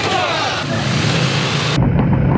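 Indian Challenger heavy motorcycles' V-twin engines running and revving on wet pavement, under a dense hiss. Near the end the hiss cuts away, leaving a deep engine rumble.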